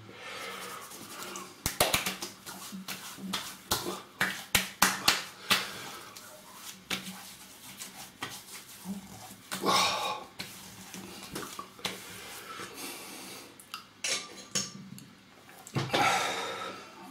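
Wet hands splashing and patting a mentholated aftershave splash onto a freshly shaved face: a run of sharp slaps and clicks over the first several seconds, then a loud breath blown out through the hands about ten seconds in.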